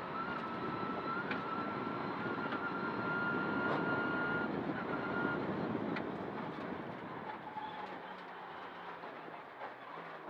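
Mitsubishi Lancer Evo X rally car heard from inside the cabin at full speed on a stage: engine and road rumble with a thin high whine that climbs slightly over the first five seconds. The sound eases off in the second half as the car slows for a chicane.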